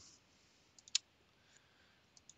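Computer mouse clicking: two faint clicks, then a single sharper click about a second in, over a quiet room.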